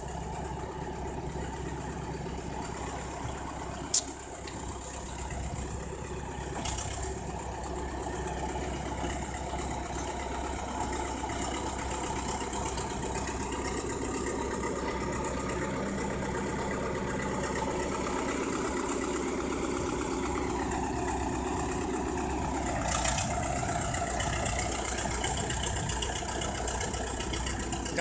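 BEML bulldozer's diesel engine running steadily, with a single sharp click about four seconds in.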